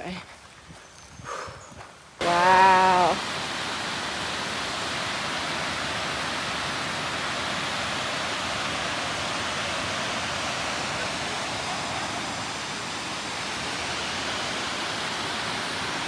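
A waterfall's steady rush of falling water, starting suddenly about two seconds in. A short, high voice-like sound is heard just as it begins.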